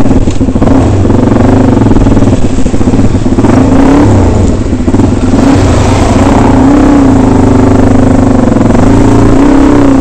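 Dirt bike engine running loud under load, its pitch rising and falling as the throttle is opened and eased over a rutted dirt track.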